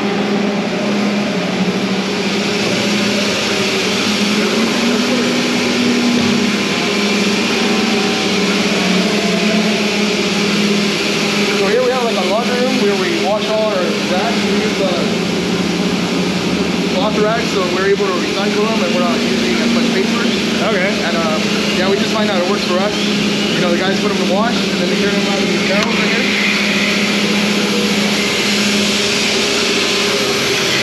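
Steady, loud drone of dairy machinery, a constant low hum with hiss over it, with indistinct voices rising above it about halfway through.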